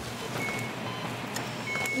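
Two short, high electronic beeps, one about half a second in and one near the end, over a steady hiss with faint handling clicks.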